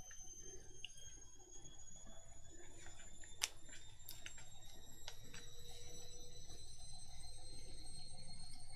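Quiet room tone: a faint low hum under several thin, steady high-pitched tones that slowly rise in pitch, with a few faint ticks and one sharper click about three and a half seconds in.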